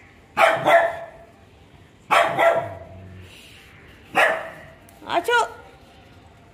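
Small white spitz-type dog barking four times at the gate, in short sharp barks spaced a second or two apart.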